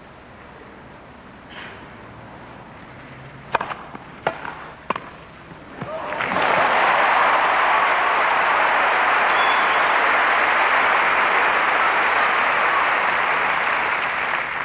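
Tennis rally on grass: three racket-on-ball strikes within about a second and a half, then the crowd breaks into loud applause and cheering that keeps up for the rest.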